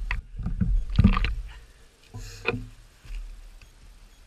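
Wind rumbling on the microphone, with knocks, scrapes and clatters of someone moving over loose rocks close by, loudest about a second in and again past the middle.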